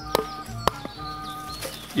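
Two chopping strikes of a Fällkniven A1 Pro knife into the end of a wooden stick, about half a second apart. Each is a solid whack from the heavy blade.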